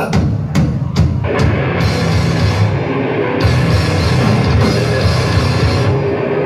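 Death metal band playing live with distorted guitars, bass and drums. The song opens with a few hard accented hits about twice a second, then the full band plays on at full volume.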